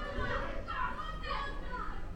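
Children's high voices chattering and calling out in the background, several short falling calls, over a steady low hum.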